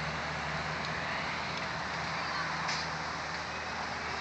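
Steady low hum of an idling vehicle engine under outdoor background noise.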